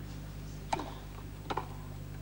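Two tennis racket strikes on the ball, under a second apart: the serve, then the return.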